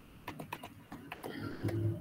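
Computer keyboard keys clicking in a light, irregular run of taps, with a brief low hum starting near the end.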